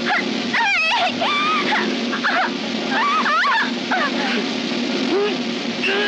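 Voices yelling and whooping in short, bending cries, over film background music.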